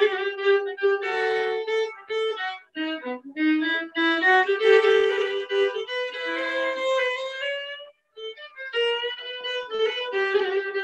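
Solo violin playing a simple jig-like tune in Irish fiddle style in first position, a run of short bowed notes with a brief break about eight seconds in.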